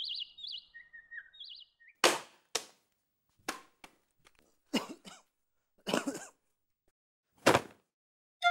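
Birds chirping briefly at the start, then a broom sweeping a floor: about eight short, irregular strokes, each a second or so apart.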